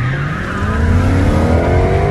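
Car engine accelerating hard, its pitch climbing steadily, with tyres squealing.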